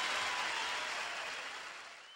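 Studio audience applauding, fading away over the last second or so.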